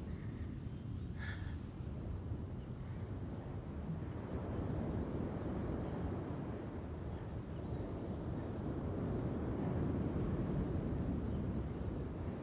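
Steady low rumble of wind on the microphone, outdoors by the sea, swelling slightly near the end.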